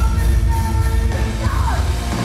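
Live heavy metal band playing loud: a female singer yelling a held sung note into the microphone over distorted electric guitar and drums, with a falling pitch slide near the end.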